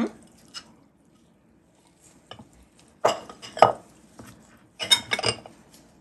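Metal serving spoon clinking and scraping against glass serving bowls as food is scooped: a few scattered clicks, then two short bursts of clatter about three and five seconds in.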